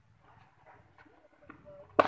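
Faint scattered knocks, then a single sharp crack at the very end: a cricket bat striking the ball in net practice.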